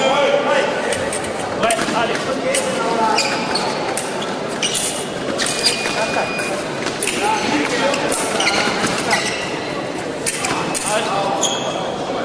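Foil fencers' footwork on the piste: an irregular string of sharp knocks, stamps and clicks, with voices in the background of a large hall.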